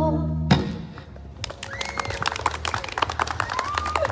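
A female singer and live band end the song on a held note and a final sharp band hit about half a second in. After a short lull, scattered hand claps and a few voices begin about a second and a half in.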